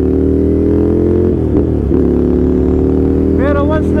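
Ducati Scrambler's L-twin engine running under way as the motorcycle pulls along, its pitch climbing slowly. About one and a half seconds in the pitch dips briefly, as at a gear change, then climbs again.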